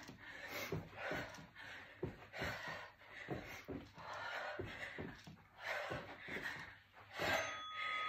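A woman breathing hard between drop squats, with soft thumps of bare feet on an exercise mat. Near the end a short electronic beep sounds, marking the end of the 20-second work interval.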